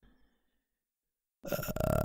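Near silence, then about one and a half seconds in a man's low, drawn-out throaty voiced sound, a hesitant "mm", that leads straight into speech.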